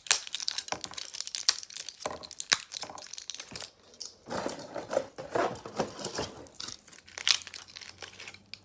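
Packaging crinkling and rustling, with scattered light clicks and taps of small items being handled, busiest around the middle.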